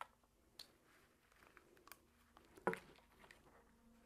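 Near silence with faint clicks and rubbing from a latex balloon and a balloon stretcher tool being worked as small items are pushed into the balloon; one sharper click about two and a half seconds in, over a faint steady hum.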